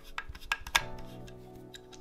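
A few small, sharp metallic clicks in the first second from a screwdriver working a small screw on a laser engraver's module housing, loosened to clamp the ground wire's cable lug underneath. Steady background music plays underneath.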